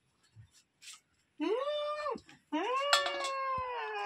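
A woman wailing in grief over someone she takes to be dead. Two long drawn-out cries start about a second and a half in: the first rises and falls away, and the second is held longer.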